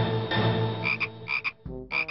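Small frog croaking: a long, low, steady croak that cuts off suddenly about a second and a half in. Short high chirps come in pairs during its second half.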